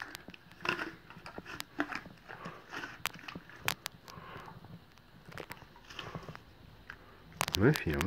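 Pony biting into and chewing an apple taken from a hand, an irregular run of sharp crunches and crackles. A person's voice murmurs near the end.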